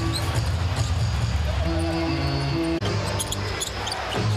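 Arena music playing in a basketball arena over court noise, with a basketball bouncing on the hardwood. The sound breaks off abruptly about three-quarters of the way through and picks up again.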